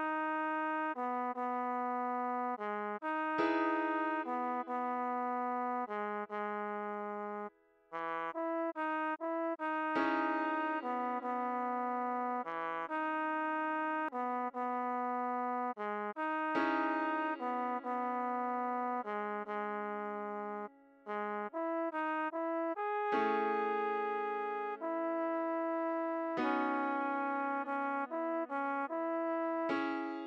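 Trombone playing a melody of short, quickly changing notes over sustained piano chords that are struck afresh every six or seven seconds, moving from E major to C-sharp minor about halfway through. The music drops out twice for a moment, once about a third of the way in and again about two-thirds in.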